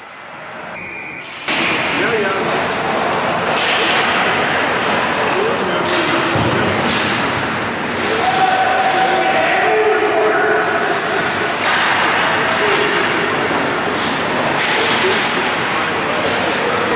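Live ice hockey rink sound that cuts in about a second and a half in: players and spectators shouting over a steady rink din, with sharp knocks and thuds of sticks, puck and bodies against the boards, in an echoing arena.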